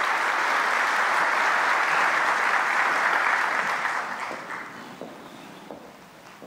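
An audience applauding, steady for about four seconds and then dying away.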